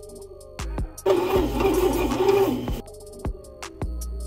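Background music with a steady beat. About a second in, a bread machine's kneading motor whirs loudly with a wavering pitch for under two seconds, then cuts off.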